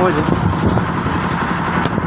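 A boat's engine running at a steady pace, a constant low drone under the open deck.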